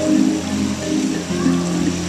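Live soul/R&B band opening a song: sustained keyboard chords over a held low bass note.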